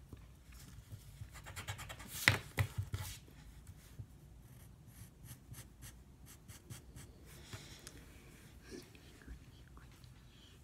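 Pencil drawing on a sheet of paper on a wooden desk, with the paper handled and shifted: a cluster of scratchy strokes and rustles, loudest a little past two seconds, then lighter scattered strokes.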